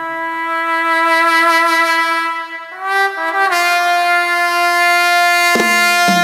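Live orchestra playing an instrumental passage of long held brass notes. About three seconds in, the sound briefly dips and moves to a new, higher held note.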